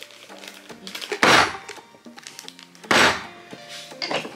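Two hard thunks, about a second and a half apart, as the bottom of a shrimp-paste container is brought down on a garlic clove on a kitchen counter to smash it.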